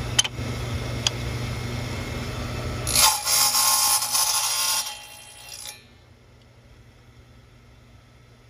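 Small benchtop table saw running, then its blade cutting through a carbon fiber tube with a loud hiss from about three seconds in. The sound cuts off sharply just before six seconds.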